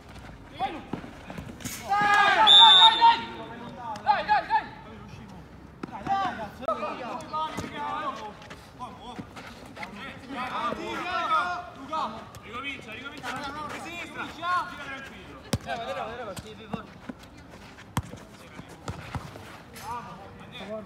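Players shouting and calling out on a small football pitch, with a loud burst of shouts about two seconds in and a few sharp knocks of the ball being kicked later on.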